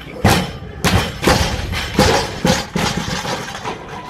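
Loaded barbell with rubber bumper plates dropped from overhead onto the lifting platform: a heavy thud about a quarter second in, then a string of further thuds and clatters as the bar bounces and settles over the next couple of seconds.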